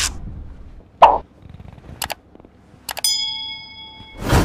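Channel-intro sound effects: a short hit about a second in, a few quick clicks, then a bright bell-like ding about three seconds in that rings and fades out.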